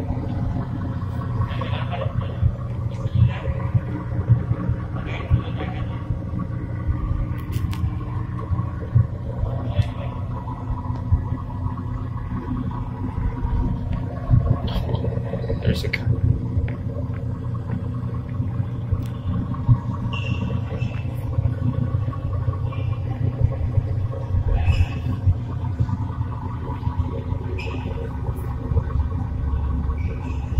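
Truck driving simulator's engine sound: a steady low rumble with a few overtones that hold their pitch, with scattered light clicks and knocks.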